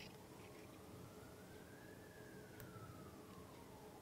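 Near silence with a faint siren wail, slowly rising in pitch for about two seconds and then falling, over a faint steady hum.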